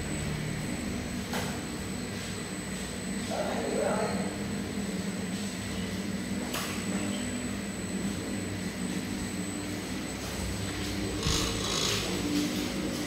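Rice-noodle sheet coating machine running: a steady mechanical hum with low droning tones from its motor-driven conveyor belt and rollers, with a couple of faint clicks.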